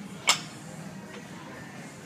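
A single sharp metallic clank from a loaded barbell about a third of a second in, as the bar and its plates come through the bottom of a deadlift rep, over faint background music.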